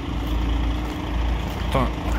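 DAF XF truck's diesel engine idling steadily.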